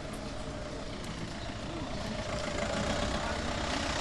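Steady outdoor street noise with the hum of a running vehicle engine and indistinct voices, growing a little louder in the second half.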